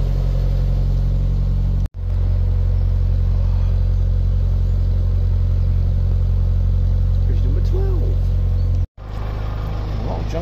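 Narrowboat's diesel engine running steadily at cruising speed, a loud, even low drone. The sound drops out abruptly for a moment twice, about two seconds in and about nine seconds in.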